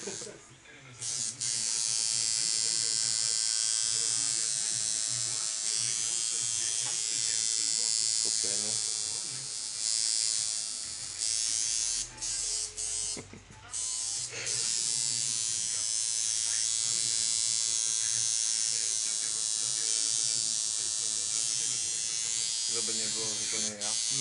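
Electric tattoo machine buzzing steadily as it works on skin, starting about a second in, stopping briefly a couple of times around the middle, then running on.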